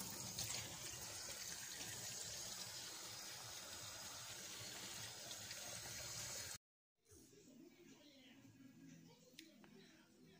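Kitchen tap running steadily, its stream splashing over a cleaned fish being rinsed and into a stainless steel sink. The water sound cuts off abruptly about two-thirds of the way through, leaving only a faint, quiet background.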